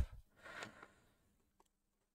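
Near silence: faint room tone, with one soft, brief rustle about half a second in.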